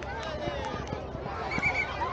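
Many children's voices shouting and chattering at once, with a short, high trilled sound of three quick pulses about one and a half seconds in, the loudest moment.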